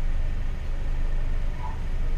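Car engine idling while stationary, heard from inside the cabin as a steady low hum.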